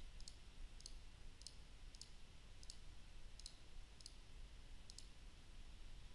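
Computer mouse clicking: about eight faint, short clicks at an even pace, a little under a second apart, over quiet room tone.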